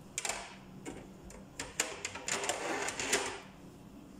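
Kitchen utensils and dishes clattering as they are handled: a run of sharp clicks and knocks, busiest about two to three seconds in.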